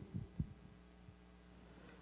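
Quiet room with a steady low hum, broken by a few soft low thumps in the first half second.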